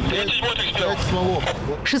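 Men talking, over a steady low engine rumble.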